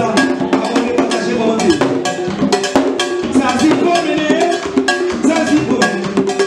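Vodou ceremonial music with hand drums and a ringing, struck bell keeping a quick steady beat, and a voice singing over it.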